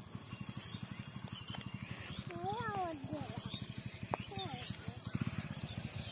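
An idling engine pulsing rapidly and steadily, with a few short vocal calls that slide up and then down near the middle.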